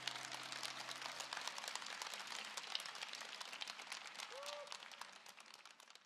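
Audience applauding while the last held note of a ballad's accompaniment fades out; the clapping thins and dies away near the end.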